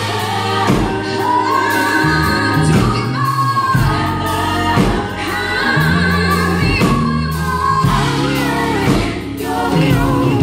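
Live band music with a female lead singer and backing vocalists singing over electric guitar, bass, drums and keyboard. The singing is made of held notes that bend and slide, over steady bass notes and regular drum hits.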